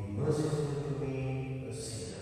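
A priest chanting the liturgy alone in a low male voice, holding long, steady sung notes.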